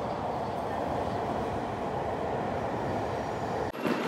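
E5 series Shinkansen bullet train moving along the platform, a steady rushing of air and running gear. It stops suddenly near the end.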